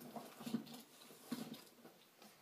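Hands rummaging in a handbag: faint rustling with a couple of soft knocks as a phone charger cable is pulled out.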